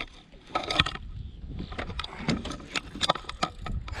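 Irregular light knocks and clicks over a low rumble, from movement and handling aboard an aluminium boat, with a short exclaimed "ah" near the start.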